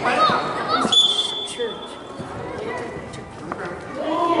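Shouting and chatter from players and spectators, with one steady high whistle blast about a second in, typical of a referee's whistle stopping play.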